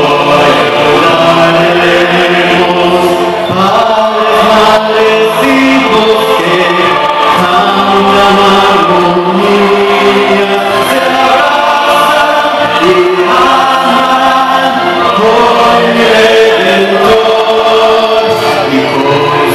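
A man singing a slow song into a handheld microphone through a PA system, with musical accompaniment. He holds each sung note long.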